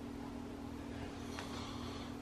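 Steady low hum over a faint hiss: room tone, with a faint light rustle about one and a half seconds in.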